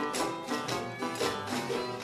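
Jug band playing between sung lines of the chorus: plucked string instruments strumming a steady beat of about three to four strokes a second.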